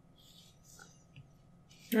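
Faint scratching of a stylus drawing on a tablet screen, in two short strokes. Speech starts just before the end.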